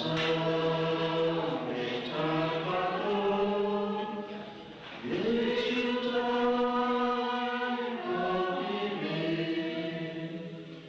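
A church congregation singing a hymn together in long held notes, pausing for breath between phrases about five seconds in and again near eight seconds.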